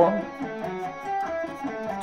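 Electric guitar playing a slow sweep-picked arpeggio exercise: single notes one after another, about four a second, stepping across the strings in the 1-3-4 fingering pattern.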